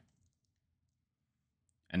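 Near silence with a faint computer mouse click, then a man's voice begins at the very end.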